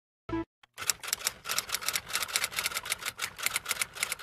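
A short thump, then fast, irregular mechanical clicking, about eight clicks a second, much like typing on keys.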